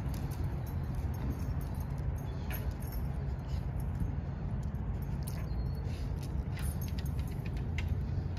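Dog's collar tags and leash hardware jingling and clicking in short, scattered bursts as the dog moves about sniffing, over a steady low rumble.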